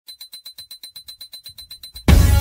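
Opening of an electronic rock track: a rapid, even high-pitched beeping, about nine pulses a second, with a low swell building near the end.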